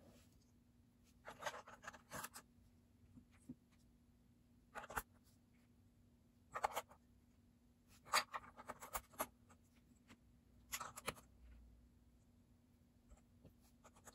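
Lego bricks being handled and pressed into place on a Lego vacuum engine, their cylinder wall pieces slick with olive oil: quiet, irregular plastic clicks and light scrapes, spaced out with short pauses between them.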